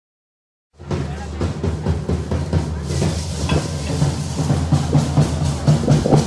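Matachines dance drums beating a fast, steady rhythm, starting suddenly about a second in.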